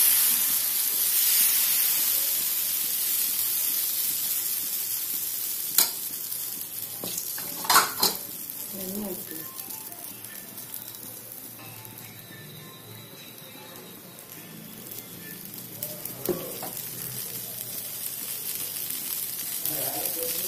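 Dosa batter sizzling on a hot tawa as it is spread and left to cook. The hiss is strongest at the start and fades gradually over the first dozen seconds or so, with a few light clicks of a utensil against the pan about six, eight and sixteen seconds in.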